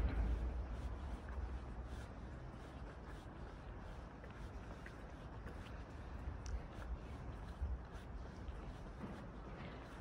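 Wind rumbling on the microphone of a handheld camera carried while walking, strongest in the first second and then steadier, with a few faint scattered ticks.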